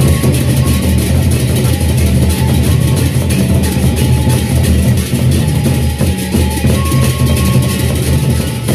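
Gendang beleq, the Sasak gamelan of Lombok, playing a welcome-dance piece: large double-headed barrel drums beaten with sticks, over dense, continuous cymbal clashing and sustained low tones.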